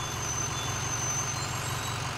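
Diesel school bus engine idling with a steady low rumble. This is the traditional diesel bus sound, set against the quiet electric buses.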